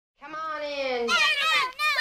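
A high-pitched sampled voice opening a hip-hop breaks track. It speaks one long drawn-out sound whose pitch slides down through the first second, then a few short wavering phrases, with no beat under it yet.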